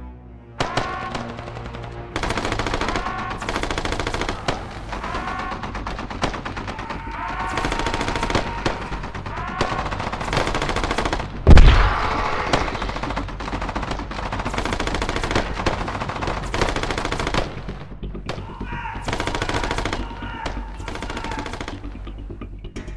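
Automatic gunfire, several weapons firing rapid bursts almost without pause, with one loud, deep explosion about halfway through.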